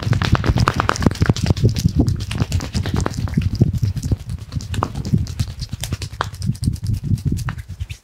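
Percussive hand-strike massage on a person's arm: a fast, uneven run of palm slaps and claps with deep thumps, stopping abruptly at the end.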